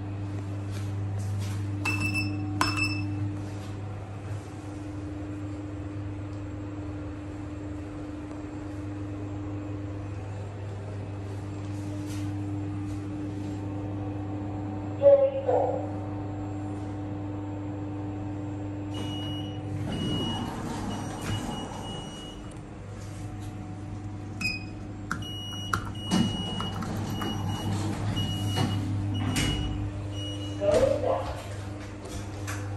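Passenger lift in use: a steady hum runs throughout from the car and its machinery. Short electronic beeps sound about two seconds in. Later, repeated beeping comes with rumbling and knocks, in two stretches from about two-thirds of the way through.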